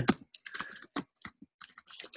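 Computer keyboard typing: quick, irregular keystrokes, several a second.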